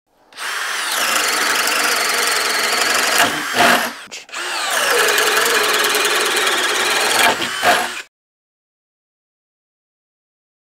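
DeWalt Atomic compact brushless drill boring a 1-inch Speed Demon bit into thick wood, in two runs of about three and a half seconds each, edited back to back. In each run the motor's pitch sags as the bit bites, and there is a brief louder burst near the end.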